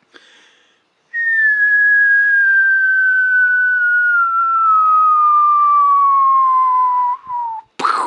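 A person whistling one long, steadily falling note, like a diving airplane, sliding down to about half its starting pitch over some six seconds. A brief noisy sound follows right at the end.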